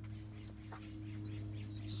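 Short, high, thin bird chirps, about three in two seconds, over a steady low hum.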